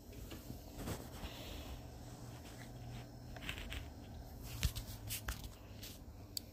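Quiet room tone with a faint low hum, broken by a few soft clicks, knocks and rustles, as from light handling.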